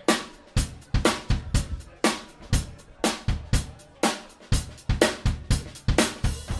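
Drum kit playing a steady Latin dance beat almost on its own, with bass drum, snare and rimshot hits. There is a strong beat about twice a second and lighter strokes between.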